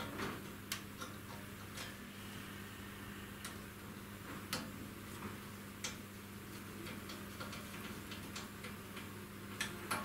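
Faint, irregular clicks of a Phillips screwdriver turning a small countersunk screw into a plastic cable drag chain bracket, one click every second or so, over a steady low hum.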